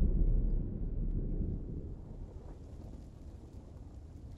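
Deep earth rumble, a sound effect of the ground swallowing the sinking kings, dying away over the first two seconds and then lingering faintly.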